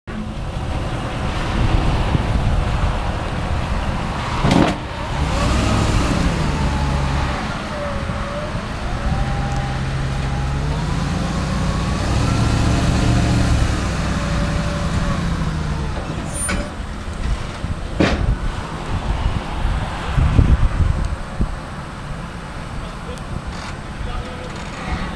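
Pickup truck engine revving up and down as the truck climbs onto a tilt-bed trailer's bed. A few sharp knocks, the loudest about 20 seconds in.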